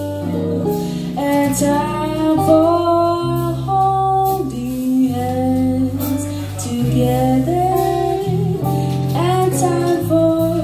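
A woman singing a slow jazz ballad melody in long held notes, accompanied by electric bass and electric guitar from a small live band.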